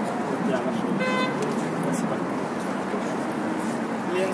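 Busy street ambience: an even wash of passers-by talking and city traffic, with one short pitched toot about a second in.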